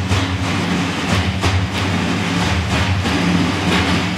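Large ensemble of frame drums (erbane and def) playing dense, continuous drumming: a steady low rolling sound with a few louder accented strikes.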